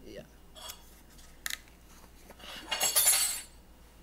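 Black stainless-steel travel mug being cleaned of dark residue by hand: a few light clicks and clinks, then a louder rubbing noise lasting about a second near the end.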